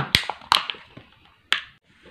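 A few sharp plastic clicks as a bottle's hard plastic blister packaging is handled, the last one about a second and a half in.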